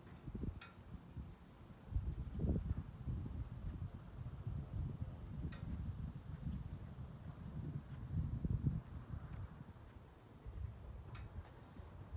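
Uneven low rumble of wind buffeting the microphone outdoors, with a few faint clicks scattered through it.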